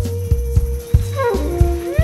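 Live big band jazz-funk music over a steady kick-drum beat. A held high note slides down in pitch about a second in, and swooping up-and-down pitch glides, almost like howling, come near the end.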